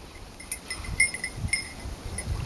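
Small metal bell tinkling: a quick run of short, clear rings over the low slosh of a dog wading through water.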